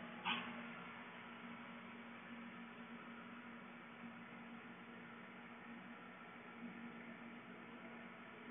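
Faint room tone with a steady low hum and one short faint sound just after the start.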